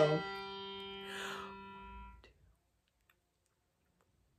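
A single sustained keyboard note, held steady for about two seconds, sounding the starting pitch for a sung interval exercise. It cuts off with a small click and near silence follows.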